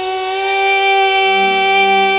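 A woman's voice holding one long, steady note in a Carnatic devotional song, the ornamented wavering just before it settled into a flat pitch. About a second in, a lower steady note joins underneath.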